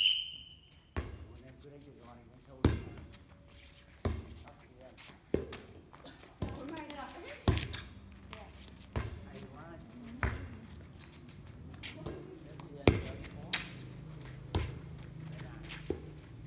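Players' hands striking a light inflatable air volleyball again and again through a rally, a sharp slap about every second, with players' voices and calls between the hits.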